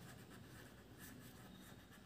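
Near silence, with the faint scratch of a felt-tip marker writing on paper.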